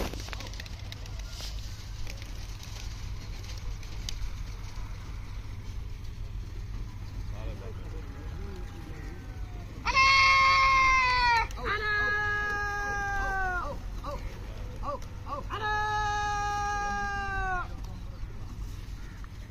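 A man calling to pigeons with three long, drawn-out shouted calls, each held for a second and a half to two seconds and dropping in pitch at the end. These are the calls used to bring the flock down to the ground.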